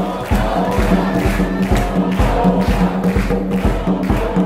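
Live church music: a group of voices singing over a hand-drum beat of about two strokes a second.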